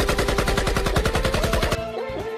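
Cartoon sound effect of automatic rifle fire: one rapid, even burst of about a dozen shots a second, which stops near the end as music comes in.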